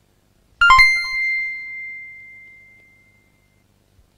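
A bright bell-like chime: a quick cluster of struck notes about half a second in, then one high note rings on and fades away over about two and a half seconds.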